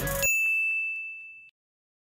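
A single bright 'ding' sound effect: one high chime that rings and fades out over about a second and a half.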